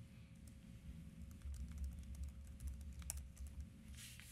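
Faint, scattered light clicks over a low hum of room tone.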